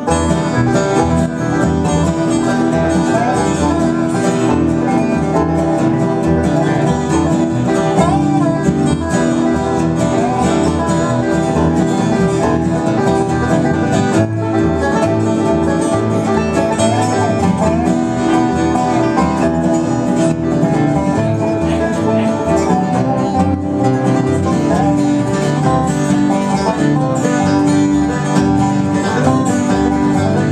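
Acoustic bluegrass band playing an instrumental tune: dobro-style resonator guitar, flat-top acoustic guitar and upright bass, with a few sliding melody notes.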